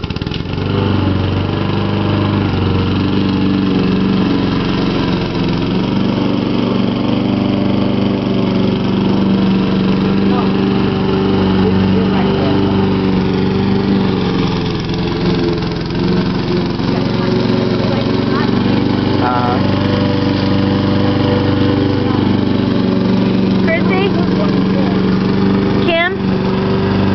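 Gasoline lawn mower engine running steadily and loud close by, coming on right at the start.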